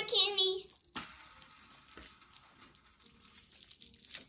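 A girl's voice briefly, then faint rustling and small clicks of something small being handled.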